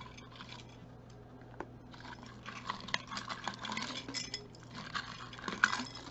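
Costume jewelry, metal chains and beads, clinking and jangling against itself and the inside of a glass jar as a hand rummages through it. A few light clicks at first, then steady clinking from about two seconds in.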